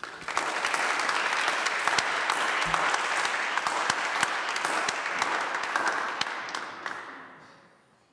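Audience applauding: many hands clapping together, starting at once, holding steady and then dying away over the last second or so.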